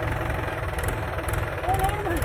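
Mahindra tractor's diesel engine running steadily at low idle, an even fast chugging, as the tractor creeps along in gear.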